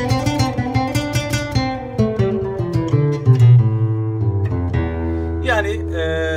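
Nylon-string classical guitar picking out a solo line in the Mi Kürdi (E Kürdi) makam: a quick run of plucked notes, then slower notes stepping downward, ending on a low note left ringing.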